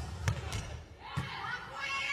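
A volleyball hit on the serve, a sharp smack a moment in, with a second quick knock just after. About a second later comes a duller hit as the serve is received, followed by voices in the hall.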